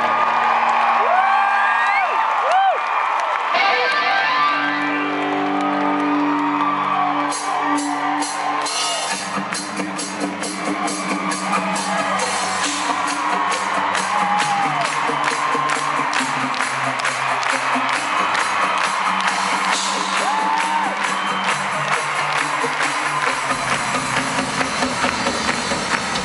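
A live band in an arena playing a song's instrumental intro through the PA, heard from among the audience. Over the first few seconds the crowd whoops and screams over held chords, and about seven seconds in a steady drum beat with guitar kicks in and carries on.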